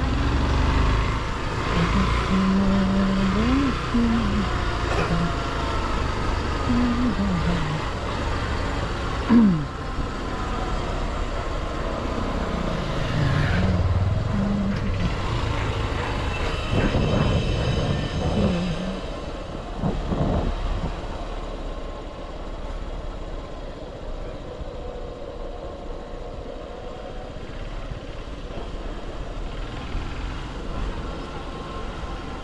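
Motorcycle engine running under way, with wind and road noise. The engine note steps up and down with the throttle through the first ten seconds, with one sharp knock about nine seconds in, then settles to a quieter, steadier run.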